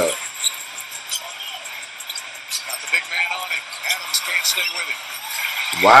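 Basketball game broadcast playing at low level with little bass: arena crowd noise, a few short sharp clicks, and a faint commentator's voice coming and going.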